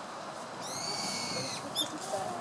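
A bird calling: one drawn-out, slightly falling high note about a second long, then a brief quick run of high notes.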